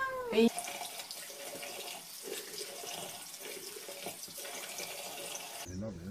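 A cat's meow ends just after the start, followed by a steady hiss of running water for about five seconds that cuts off suddenly near the end.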